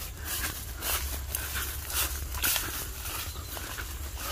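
Footsteps through tall grass, with the blades brushing and rustling in soft, irregular swishes.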